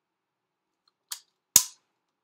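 Two sharp clacks from a silicone caulking gun, about half a second apart, the second louder.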